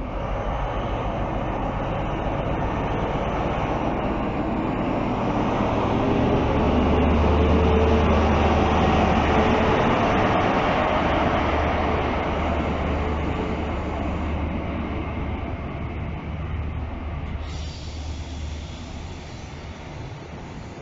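CrossCountry HST Class 43 power car's diesel engine under power as the train pulls out and passes close, loudest about eight seconds in. After that the passenger coaches roll by as the engine sound fades.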